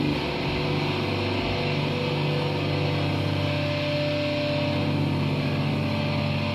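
Amplified electric guitars and bass droning from the stage amps between songs: a steady low hum with a few held tones over it.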